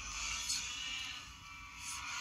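Quiet background music from a drama soundtrack over a steady hiss, swelling slightly twice.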